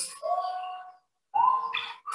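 Two held, pitched tones from a nature documentary's soundtrack, played through classroom speakers. A lower one comes first, then a short gap, then a higher, shorter one near the end.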